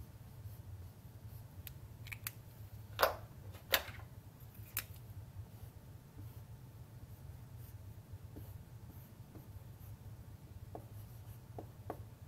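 Dry-erase marker writing on a whiteboard: a few short, sharp squeaky strokes, the strongest about three to four seconds in, with fainter ticks later, over a steady low hum.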